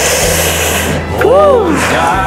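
A loud breathy rush of air, then a short wordless vocal sound from a woman that rises and falls in pitch, with the country song playing quietly underneath.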